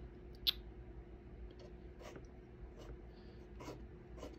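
Painting knife faintly scraping thick oil paint on the canvas in a few short strokes, one sharper scratch about half a second in.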